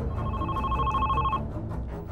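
Office desk telephone ringing: one electronic ring just over a second long, starting right at the beginning.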